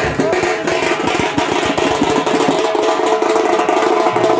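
A band of stick-beaten cylindrical drums playing a fast, dense rhythm, with a held pitched tone sounding above the drumming.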